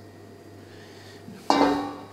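Steady low kitchen hum, then about one and a half seconds in a sudden clank of cookware: a pan or utensil knocked or set down, ringing with a short pitched tone that fades within half a second.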